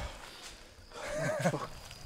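A man's short, strained vocal sound, wavering in pitch, about a second in. It comes from a beaten man lying on the ground.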